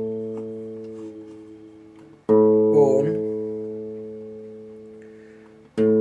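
Guitar chords, each strummed once and left to ring out and fade. The first is dying away at the start, a new chord comes about two seconds in, and another just before the end. By its owner's word the guitar has not been tuned for a long time.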